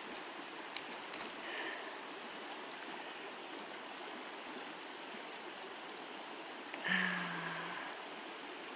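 Steady rush of the Kilchis River running over a shallow riffle, with a few small clicks about a second in. A short, steady low hum lasting about a second comes near the end.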